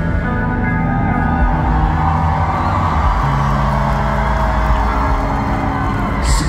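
Rock band playing live through a large PA, recorded from within the crowd: a slow, sustained passage of held bass notes and chords that change every second or two.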